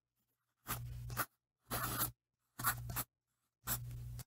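Pen scratching on paper in four short strokes, about one a second, with silence between them.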